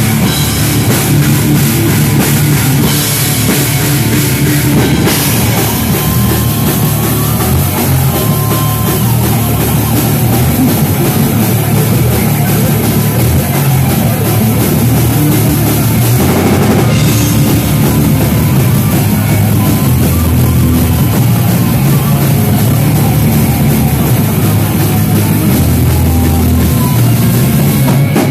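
Live metal band playing loud: a drum kit with cymbals and bass drum drives under electric guitars, with no let-up.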